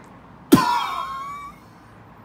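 A man's vocal sound effect about half a second in: a sudden burst, then a wavering tone that fades out within a second. It finishes the spoken sentence in place of words.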